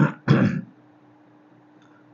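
A man clearing his throat in two short, rough bursts close together, then quiet room tone with a faint steady hum.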